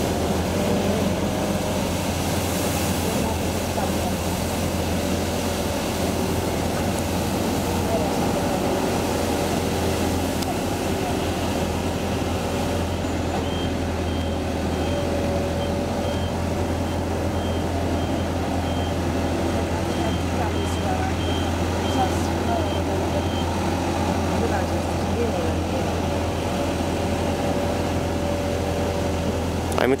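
Compact street sweeper running steadily, its engine humming low under the noise of its brooms on the paving. Midway a high-pitched beeper sounds about twice a second for some ten seconds.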